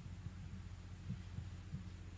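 Low steady electrical hum from a microphone and sound system, with a few faint soft low thumps.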